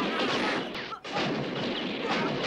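Film gunfight sound effects: rapid, dense pistol and revolver shots that drop out briefly about a second in, then resume.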